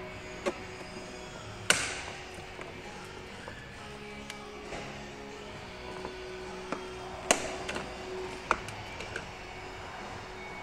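Background music playing steadily, with a few sharp plastic snaps and clicks as the clips of a BMW 5 Series front door trim panel are pried loose with a plastic trim tool. The loudest snaps come just under two seconds in and again after about seven seconds.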